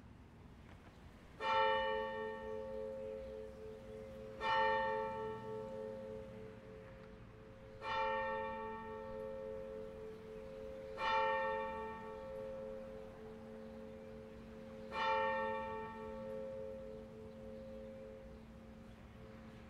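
A church bell tolling slowly, struck five times about three to four seconds apart, each stroke ringing on into a long, lingering hum.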